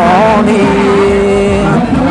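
Muong folk singing (hát Mường): a voice finishes a wavering, ornamented phrase, then holds one long steady note for over a second.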